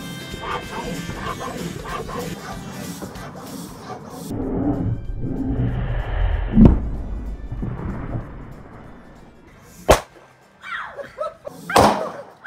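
A 29er bicycle inner tube, over-inflated with a floor pump, bursts with a single sharp bang near the end, followed by children shrieking. Background music plays earlier, and there is a heavy low thump a little past the middle.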